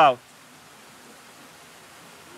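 A man's last word cuts off just after the start, followed by a faint, steady hiss of outdoor background noise.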